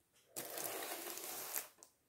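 Rustling handling noise from objects being moved by hand, starting a moment in and lasting about a second and a half.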